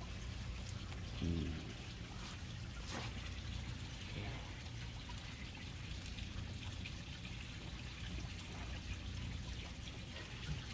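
Steady background of trickling, running water with a low hum beneath it. A brief voiced murmur comes about a second in.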